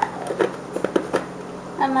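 A handful of quick, light taps and clicks of kitchen utensils against a bowl as the spices and chili sauce for a shrimp marinade are handled.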